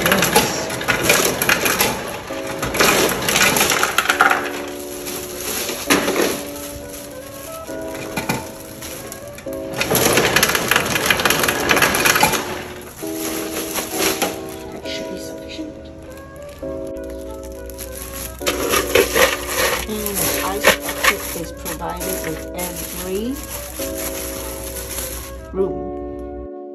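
Ice cubes clattering out of a Scotsman ice machine's chute into a plastic bag, in rattling bursts at the start and again about ten seconds in, over background music.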